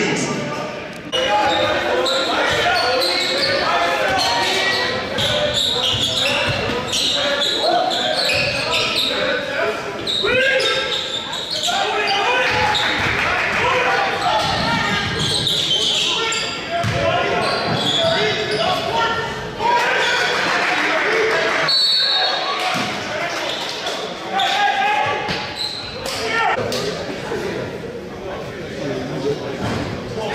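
Basketball game sound in a large gym: the ball bouncing on the hardwood amid indistinct, echoing voices of players and spectators.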